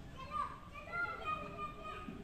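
Faint children's voices talking and calling in the background.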